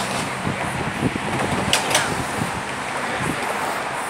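Steady road traffic passing close by, a continuous wash of engine hum and tyre noise, with a brief sharper hiss a little before the middle.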